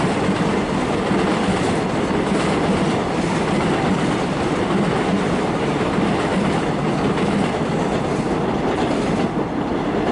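Korail class 311000 electric multiple unit on Seoul Metro Line 1 running along the tracks: a steady noise of wheels on rail, easing slightly near the end as the train draws away.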